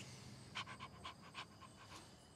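A dog panting softly: quick, faint pants, about five or six a second, starting about half a second in.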